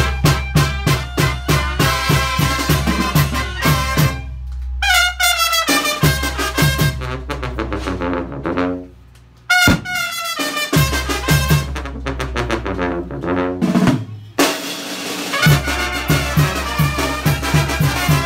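A Mexican banda brass band playing live: trumpets, trombones, clarinets, a sousaphone and a tambora bass drum over a steady beat. Around the middle the beat thins out to a few held horn lines and a brief near-pause, then the full band comes back in loudly near the end.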